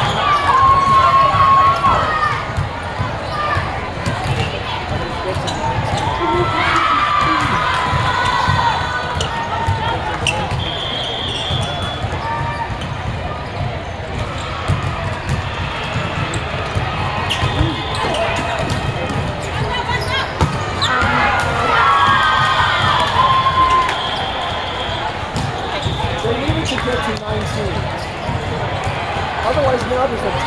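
Busy volleyball hall: balls are struck and bounce on the courts again and again. Under them run the chatter of players and spectators and a few bursts of shouting and cheering from the players.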